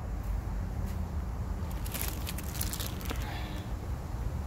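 A clear plastic bag of homemade carp bait being handled, its crinkles coming in a burst of crackles about two seconds in, over a steady low rumble.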